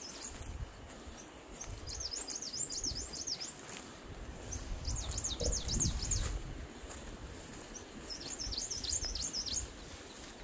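A small bird singing three bursts of rapid, high, up-and-down warbling notes, a few seconds apart, over a low steady rumble.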